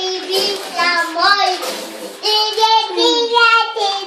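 Young children singing loudly in high voices, with longer held, wavering notes in the second half.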